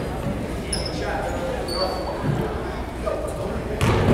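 A basketball bouncing once on a hardwood gym floor near the end, over a steady murmur of voices in a large echoing gym, with a few short high squeaks.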